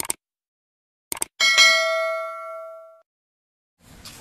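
Subscribe-button animation sound effect: a mouse click, then a quick double click about a second in, followed by one bright notification-bell ding that rings out and fades over about a second and a half.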